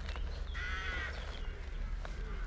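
A bird calling once outdoors, a single call about half a second long starting about half a second in, over a steady low rumble.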